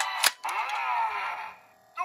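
Kamen Rider Drive toy belt and Shift Brace electronics: the looping electronic standby tune is broken by a sharp plastic click as the Shift Car is flicked in the brace. Electronic tones with falling sweeps follow and fade out over about a second, and a second click comes at the very end.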